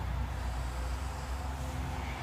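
New Holland T4.95 tractor's diesel engine idling steadily, heard from inside the closed cab as a low, even hum.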